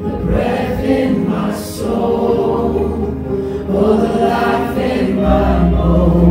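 Live worship band playing a slow song: voices singing into microphones over electric guitar, bass guitar and acoustic guitar. The bass fills out about five seconds in.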